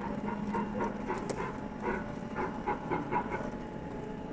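Pepper humanoid robot's speaker playing a jingle of about ten short, pitched electronic blips, the cue for a quiz question.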